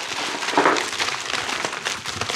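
Plastic mailer envelope and the plastic-bagged parts inside it crinkling and rustling as the mailer is shaken out onto a table: a dense, continuous crackle.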